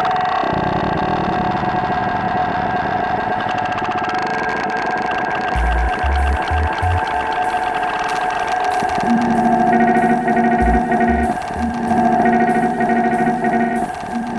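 Live electronic music built from looped, electronically processed cello sound: a sustained layered drone, joined by deep bass thumps about six seconds in and by a repeating looped pattern from about nine seconds.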